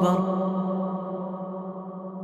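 A voice holding one long chanted note at a steady pitch, slowly fading out.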